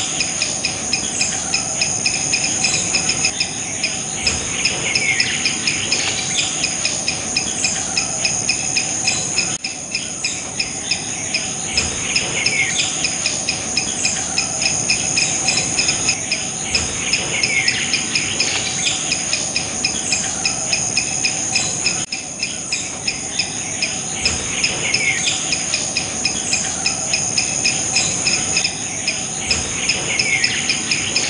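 A steady, high-pitched insect chorus with a fast, even pulsing trill. Over it a bird gives a short falling call every few seconds.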